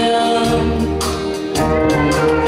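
Live band music: a woman singing into a microphone over electric bass, acoustic guitar and drums, with regular drum and cymbal strikes.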